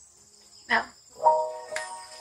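Steady high-pitched chirring of crickets. Soft sustained notes of background music come in a little over a second in.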